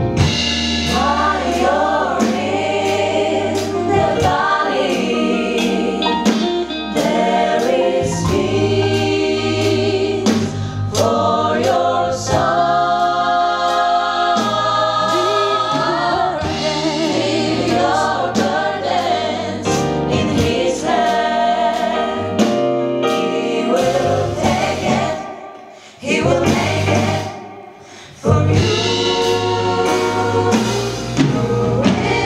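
Gospel choir singing with band accompaniment. The music drops away for a few seconds near the end, then comes back in.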